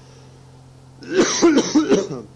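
A person coughing several times in quick succession, starting about a second in and lasting about a second, over a steady low hum.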